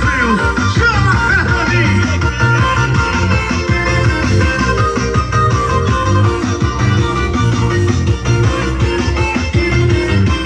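Loud music with heavy bass blasting from car-mounted speaker walls (paredões de som).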